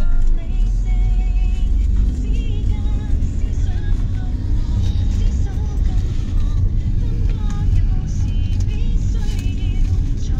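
Steady low rumble of a car's engine and road noise heard from inside the cabin while driving, with music playing faintly over it.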